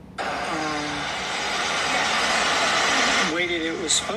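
A steady hiss from a played-back recording starts abruptly just after the start and holds evenly. Near the end a man's voice on the recording begins to speak.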